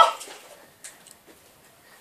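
Quiet room with a faint single click about a second in, from a small plastic Nerf pistol being handled.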